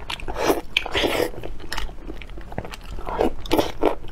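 A person slurping and chewing spicy noodle soup from a spoon, in a string of short bursts, the longest about a second in and three quick ones near the end.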